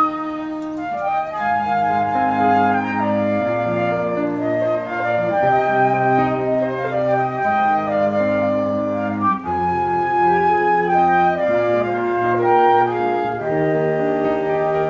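Two flutes and a cello playing a classical trio: the flutes hold sustained melody notes over the cello's bowed bass line.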